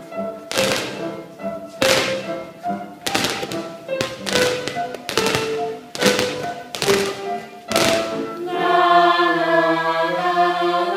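Rubber playground balls bouncing on a wooden floor about once a second, in time with piano playing. About eight and a half seconds in, the bouncing stops and a group of voices starts singing sustained notes.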